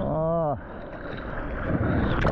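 A short vocal sound, about half a second, rising then falling in pitch, followed by water sloshing and splashing around a paddling surfboard as a breaking wave builds ahead.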